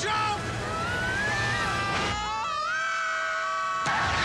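Movie soundtrack: people screaming and yelling as they ride a speeding toy car, over a rushing noise and orchestral music. The rush cuts off sharply about halfway through, leaving a sustained musical chord with a gliding cry over it.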